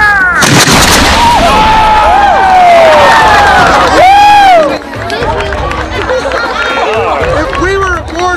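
A broadside of small black-powder cannons, several reports in quick succession about half a second in, followed by loud shouting and whooping from the gun crews and onlookers.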